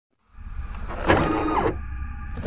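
Designed mechanical sound effects for an animated hatch opening: a low rumble starts just after the beginning, and about a second in a motorised whir sweeps down in pitch and stops.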